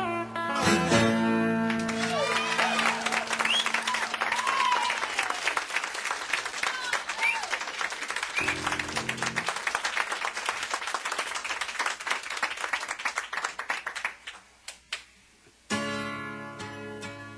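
A live country-rock band's final chord rings out, then a small audience applauds and cheers, with a brief guitar strum in the middle. The clapping dies away, and just before the end a guitar starts the next song.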